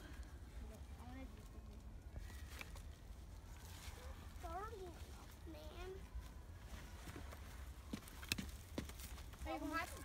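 Faint outdoor ambience with a steady low rumble, a child's voice calling out briefly around the middle, and a few sharp knocks near the end.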